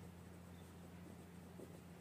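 Faint scratching of a ballpoint pen writing on paper, over a low, steady hum.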